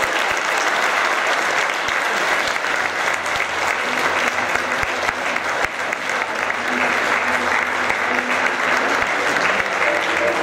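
Theatre audience applauding steadily as the play ends.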